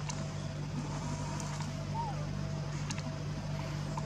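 A steady low mechanical hum, like a motor running, with a brief high chirp about two seconds in.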